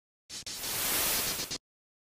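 A burst of static hiss, like an untuned radio, lasting just over a second. It breaks off briefly near its start, then cuts off suddenly.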